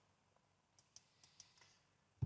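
Near silence with a few faint, short computer mouse clicks around the middle.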